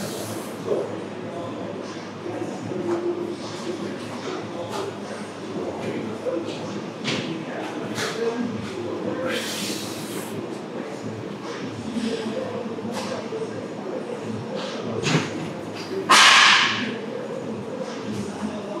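Busy gym room: indistinct background voices with scattered sharp clicks and knocks of equipment, and two loud hissing bursts, one about halfway through and a louder one near the end.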